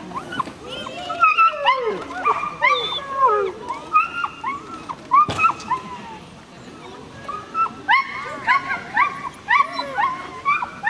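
A small dog barking in quick, high yaps, several a second, in two spells with a short pause about six seconds in. A single sharp knock comes a little past five seconds.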